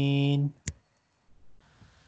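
A man's voice holding one long, steady vowel in Quran recitation, cut off about half a second in. A single sharp click follows a moment later.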